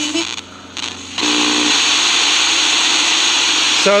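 Vega RP-240 portable radio's speaker hissing with FM static as the dial is tuned off station: a short dip in level, then about a second in a brief snatch of signal before steady loud hiss fills in.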